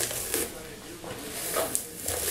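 Tangle Teezer detangling brush drawn through wet, conditioner-coated coily hair: soft swishing brush strokes, two of them standing out, about a third of a second in and near the end.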